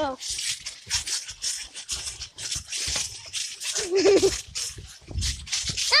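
Rapid, irregular rustling and scuffing as clothing rubs against the microphone during a chase on a trampoline, with a few low thuds and a short child's voice sound about four seconds in.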